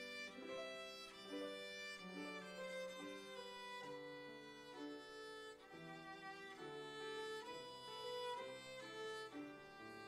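Violin played with a bow, a slow melody of held notes, over a lower accompaniment of sustained notes.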